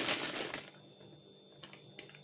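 Plastic packaging of a frozen green-bean bag crinkling as it is handled, briefly at the start.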